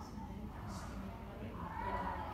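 Indistinct voices in the room, with a drawn-out voice that rises and falls in pitch near the end.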